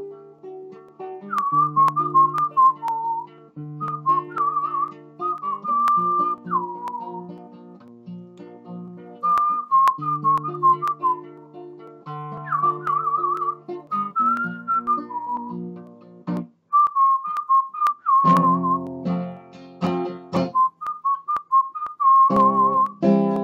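A man whistling a melody with warbling trills over a fingerpicked acoustic guitar. Near the end the guitar turns to louder strummed chords.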